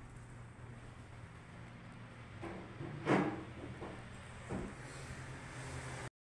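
A steady low hum with a few soft knocks and bumps, the loudest a single thump about three seconds in.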